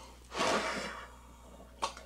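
One hard breath blown into a large party balloon, inflating it: a hiss of air about half a second long that fades out, followed by a short click near the end.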